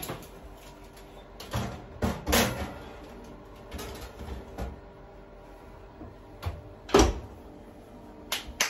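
A metal baking tray knocking and clattering against the wire rack as it goes into a wall oven, then the oven door shut with a bang about seven seconds in, the loudest sound here. A faint steady hum runs underneath.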